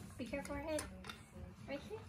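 A faint voice in the first second, too soft to make out, and a few light clicks after it.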